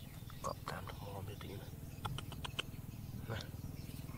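Small stones clicking and shifting in loose rocky soil as a hand picks up a gold nugget, with a few light ticks about two seconds in, over a low steady hum.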